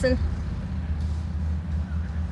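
Steady low rumble of a car engine idling, heard from inside the stopped car.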